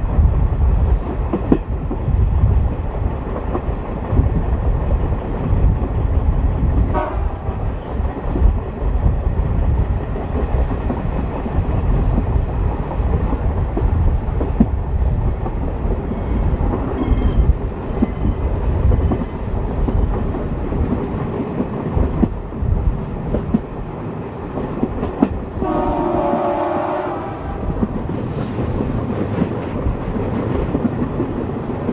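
MLW-built diesel locomotive CP 1557 running under power, heard loud from the coach behind, with wheels clicking over the rail joints. A level-crossing bell rings briefly past the middle, and the locomotive's horn sounds once for about a second and a half near the end.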